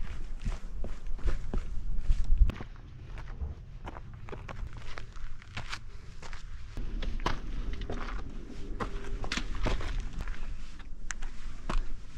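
Footsteps crunching irregularly on loose rock during a steep climb. For the first two and a half seconds, wind rumbles on the microphone.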